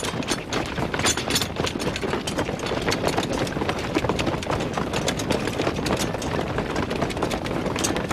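Footsteps and gear clatter of a large body of soldiers on the move: a dense, steady shuffle with many small sharp clicks and knocks.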